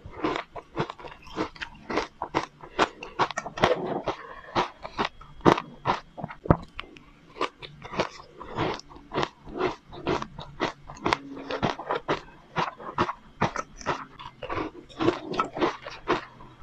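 Crunching and chewing of a mouthful of crushed ice mixed with matcha powder, heard close up through a clip-on microphone: a steady run of crisp crunches, about two to three a second.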